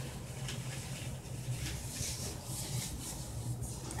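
Faint, soft rustling of gloved hands working a watery hair-colour rinse through wet hair, over a low steady hum.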